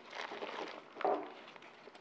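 Vermiculite granules pouring and trickling from a small plastic tub into a plastic basin, a faint dry rustle. A single short knock follows about a second in.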